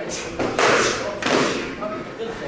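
Kicks smacking handheld kick paddles: several sharp slaps in quick succession, each ringing briefly in the hall, with voices in the background.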